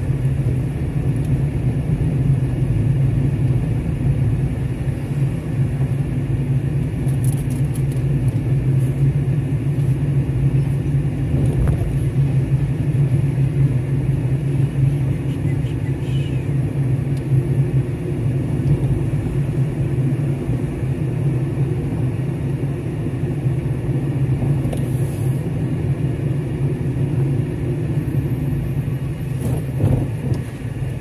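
Car driving slowly, its engine and tyre noise heard from inside the cabin as a steady low rumble.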